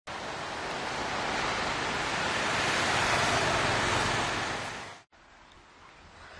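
Ocean surf on a beach, a steady rush of noise that builds and then fades out about five seconds in, giving way suddenly to a much quieter background.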